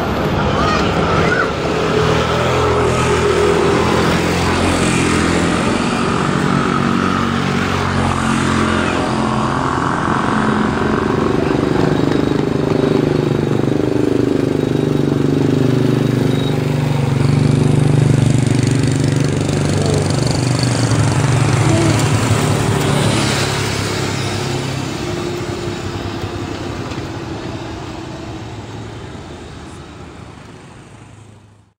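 Steady motor-vehicle engine noise with a pitch that slides down midway, as a vehicle passes. The sound fades out gradually over the last several seconds.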